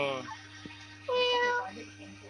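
A young kitten meowing once about a second in: a single high, steady mew lasting just over half a second.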